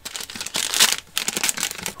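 Foil wrapper of a 2020 NBA Hoops basketball card pack being torn open and crinkled by hand, a dense crackle that is loudest a little under a second in.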